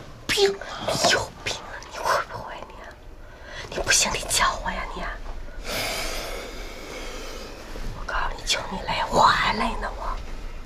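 Hushed, whispered conversation between a man and a woman, with a long breathy hiss lasting about a second and a half just past the middle.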